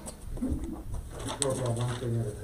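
Indistinct, low murmured voices in a meeting room.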